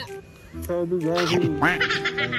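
Quacking, duck-like sounds over background music, ending in a quick run of repeated squawks.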